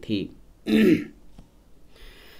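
A man clears his throat once, a short rough burst about two-thirds of a second in.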